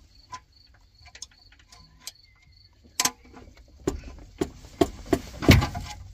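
Scattered metal clicks and knocks as hands and tools work a van's gearbox loose from the engine on a jack. The knocks come sparsely at first, then closer together and louder in the second half, the loudest a heavy knock near the end. A faint, evenly repeating high tick runs through the first two seconds.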